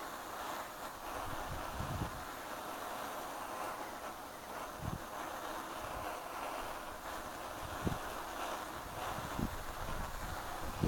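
Borde self-pressurised petrol stove burning steadily under a mess tin, a constant noisy hiss. A few brief low bumps of wind on the microphone come through it.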